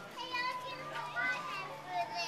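Young children's voices chattering, high-pitched, with no clear words.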